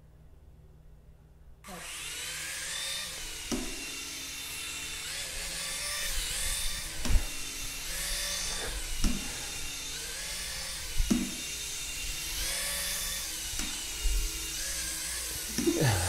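Whirly Ball flying toy's small electric motor whirring as it spins the rotor blades, starting about two seconds in; the whine rises and dips in pitch as the ball hovers. Several sharp knocks break in along the way.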